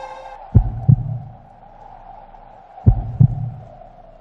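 Heartbeat sound effect: two slow double thumps (lub-dub), about two and a half seconds apart, over a soft steady hum.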